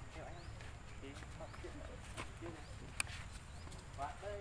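Faint short voice-like calls, with a high rising chirp repeating about once a second and a single sharp click about three seconds in.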